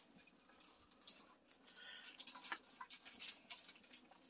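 Faint rustling and crinkling of gift packaging and a large gift sack being searched through by hand, with a few light clicks and taps of small items.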